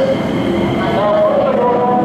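Electric commuter train at the platform, its motors whining in several tones that shift in pitch over a steady rumble.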